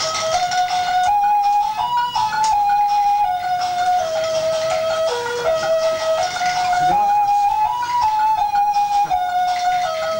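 A simple electronic tune from a baby walker's toy keyboard, one note at a time, stepping up and down through a short melody with no break.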